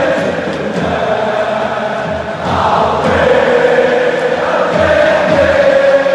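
A group of voices singing together in long held notes over music with a low beat.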